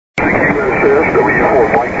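A voice from an amateur radio station heard over a shortwave receiver on 3816 kHz. It sounds narrow and muffled over steady static hiss, and the operator is giving the callsign W4MYA. The audio starts abruptly just after the beginning.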